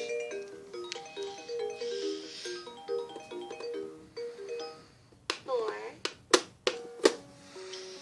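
Baby Einstein Count & Compose Piano toy playing an electronic melody of short, stepping notes, which stops about four seconds in. After it come a few sharp clicks from its keys being pressed, a brief voice-like sound and a single held note near the end.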